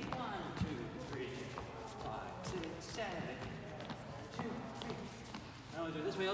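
Dance steps on a wooden floor: scattered thuds and scuffs of two swing dancers' feet, with voices talking underneath.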